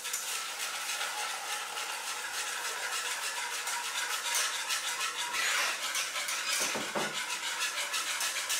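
Wire balloon whisk beating a liquid matcha custard mixture in a metal saucepan: fast, continuous strokes, the wires swishing through the liquid and rattling against the pan.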